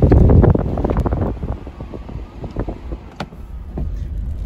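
Wind buffeting the phone's microphone at the truck's side window: a loud blast in the first half second, then irregular crackling that fades, over the steady low rumble of the truck driving.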